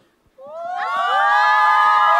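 A brief hush, then about half a second in several high female voices rise together into one long, held cheer, many voices overlapping.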